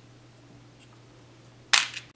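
A faint steady hum, then near the end a single short, sharp clack as a hand reaches into the plastic case of small brass heat-set threaded inserts.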